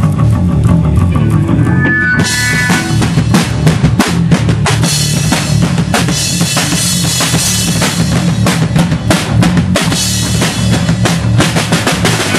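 Live hardcore band playing loud, bass guitar and drum kit to the fore. About two seconds in the drums come in hard, with rapid cymbal and snare hits over a heavy low end.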